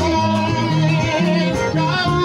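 Choir singing through microphones with instrumental accompaniment, held bass notes stepping from one to the next about every half second under the wavering voices.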